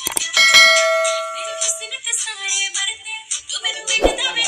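Dance music with a bell-like chime laid over it: after a couple of quick clicks at the start, a bright tone rings out about half a second in and holds for about a second and a half, the sound effect of a subscribe-button animation.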